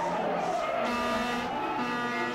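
Car tyres squealing in one long, slowly falling squeal as the car swerves out of control, its steering not answering.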